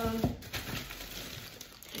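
A voice trails off at the start, then a steady rustle and crinkle of plastic grocery packaging as items are handled.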